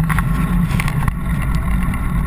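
Steady low rumble and wind noise picked up by a bicycle-mounted camera while riding on a paved road, with faint light rattles.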